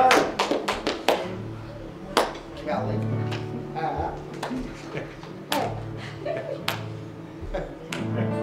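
A congregation clapping briefly at the end of a worship song. The clapping thins out after about a second, leaving a few scattered knocks over low steady sustained tones.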